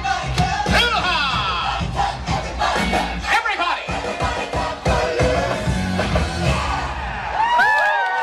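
Upbeat parade music with a steady beat, with crowd noise and a few sliding, high-pitched yells about a second in and again near the end.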